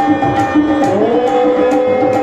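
Tabla and harmonium playing together: a steady tabla rhythm of evenly spaced strokes over held harmonium notes. About a second in, a held note glides up to a new pitch.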